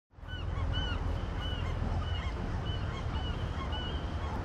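A flock of birds calling, many short calls one after another over a steady low rumble.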